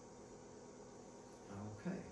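Quiet room tone: a faint steady hiss with a thin, steady high whine, then a man's voice near the end.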